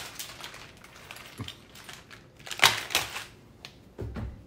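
Handling and rummaging noises: scattered light clicks and knocks, with a louder crinkling rustle about two and a half seconds in.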